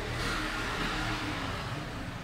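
A soft rushing noise that swells and then fades over about a second, over a steady low hum.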